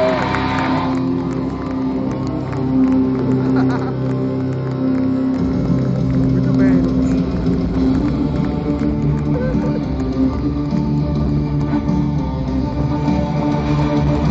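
Live rock band with electric guitars playing loudly in an arena. Sustained chords give way about five seconds in to a heavier full-band section with bass and drums.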